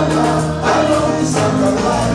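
Live gospel praise music: several women singing together into microphones over a band with drums, holding long sung notes over a steady beat.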